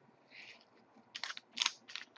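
Trading cards handled on a tabletop: a brief soft rustle, then a few light clicks and taps as cards are squared and set down.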